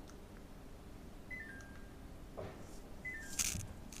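Air conditioner beeping a short falling three-note chime twice, about a second in and again near three seconds in, as it is switched off by remote. A brief rustle near the end is the loudest sound.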